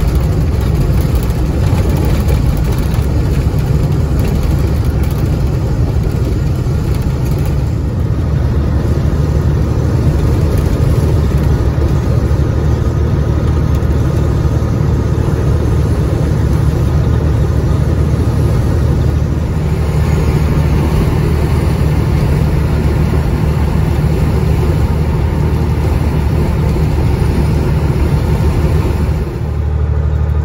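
Caterpillar 3406E diesel of a Freightliner FLD120, heard from inside the cab while cruising: a steady low drone with road and tyre noise. The loudness dips briefly near the end.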